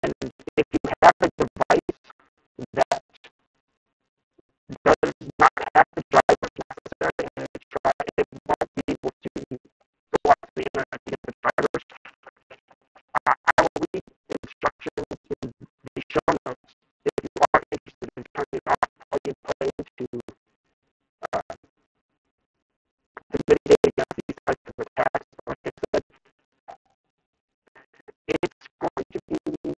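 A voice over a video call, garbled by the connection into a rapid, buzzing stutter. It comes in phrases of a second or two with short pauses between them, like a person talking in broken-up bursts.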